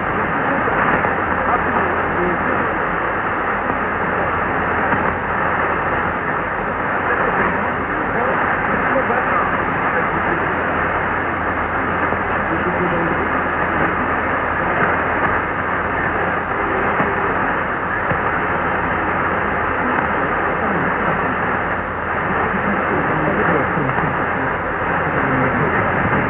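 Weak shortwave AM signal from Radio Congo on 6115 kHz through a Kenwood TS-2000 receiver: a voice faintly heard under steady static and hiss. The audio is muffled and narrow, with nothing above the middle range.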